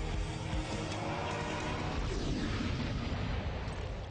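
Movie-trailer soundtrack: music mixed with a dense, noisy rumble of sound effects, with a falling tone a little past halfway through.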